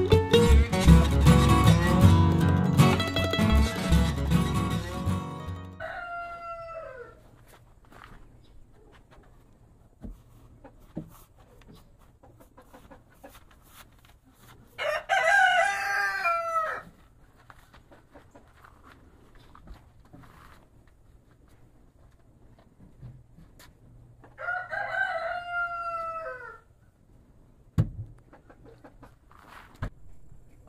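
Background guitar music that fades out about five seconds in, followed by a rooster crowing three times, roughly nine seconds apart. Each crow is a single falling call of about two seconds. There is one short knock near the end.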